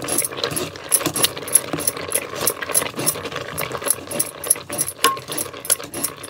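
Metal ladle stirring and pressing boiling stinging-nettle greens in a metal cooking pot, clinking and scraping against the pot in quick, irregular strokes, as the thick stalks are worked so they soften fully.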